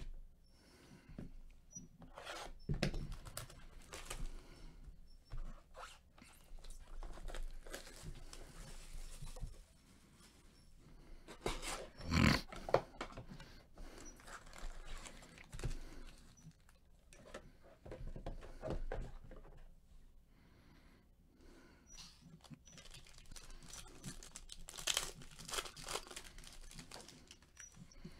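Rustling and crinkling of a trading-card hobby box's wrapping and its foil card packs being handled and torn open, with scattered clicks and crackles. There is a louder rip about twelve seconds in and a spell of busier crinkling near the end.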